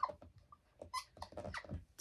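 Green dry-erase marker squeaking and scratching on a whiteboard in a quick run of short, irregular strokes while writing.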